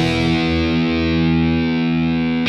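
Distorted electric guitar, a B.C. Rich, holding one chord and letting it ring out: the closing chord of the metal song.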